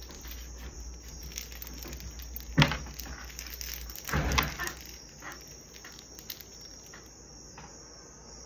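Crickets chirping in a steady high drone. Over it come a few bumps and rustles of someone moving close to the phone, the loudest about two and a half seconds in and again around four seconds in.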